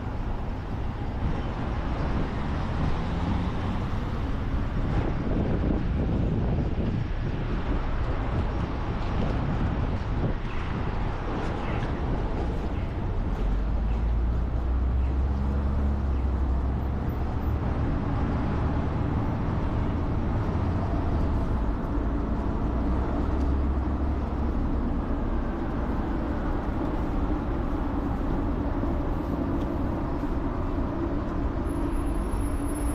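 Motor vehicle running, with steady road noise and a low engine rumble that swells about halfway through and eases again a few seconds before the end.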